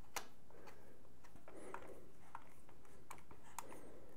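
Faint, scattered small clicks and ticks, about half a dozen, from the ID-COOLING DX360 MAX pump block's thumbscrews being tightened by hand onto the CPU mounting brackets.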